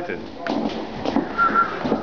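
Several people talking faintly indoors, with a few light knocks and a short high whistle-like tone about halfway through.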